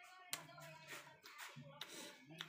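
Faint closed-mouth 'mmm' humming in two short held notes, with a couple of soft clicks.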